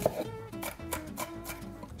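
Background plucked-guitar music, with a knife knocking once sharply on a wooden cutting board at the start and tapping faintly a few more times as a shallot is sliced.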